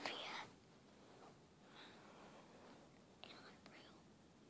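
A person whispering faintly in short breathy snatches, over near silence.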